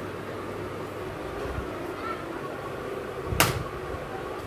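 Steady room noise with a soft low thump about one and a half seconds in, then a single sharp knock about three and a half seconds in.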